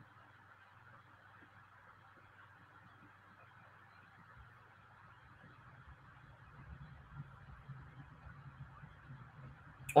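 Near silence: faint room tone with a low steady hum and soft hiss, rising slightly in the second half.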